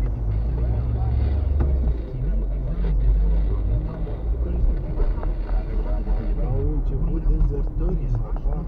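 Car driving, heard from inside the cabin: a steady low engine and road rumble, with a person talking over it.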